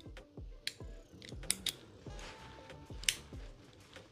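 Metal implements of a GOAT modular multitool being handled as a blade is fitted into its slot: a few faint, sharp metallic clicks spread through the moment.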